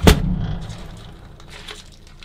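A single heavy thud at the start, with a low rumble dying away over about a second, followed by a few faint knocks.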